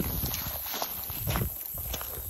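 Footsteps crunching through dry grass and twigs: a person walking, a few uneven steps.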